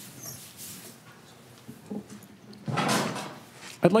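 A man sitting down in his chair close to the microphone: a short rustle and creak of the chair about three seconds in, over quiet room tone. A man's voice starts just at the end.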